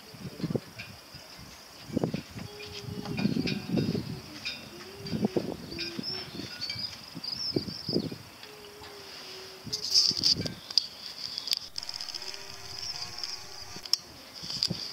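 Irregular knocks and clatter of a small sailing dinghy's gear being handled as it is rigged on its trolley, with a low tone coming and going between the knocks.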